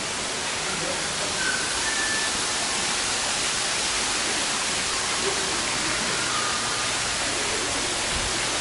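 Artificial waterfall running down a rock wall into an indoor pool, a steady even rush of falling water.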